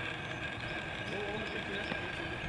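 Faint, indistinct voices of players across the field over a steady outdoor background hum.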